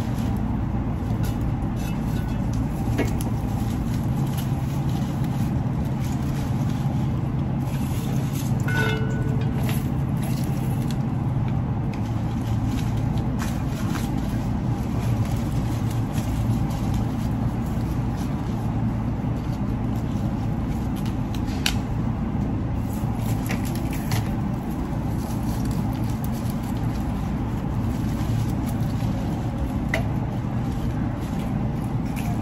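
A steady low hum with a few faint clicks and rustles.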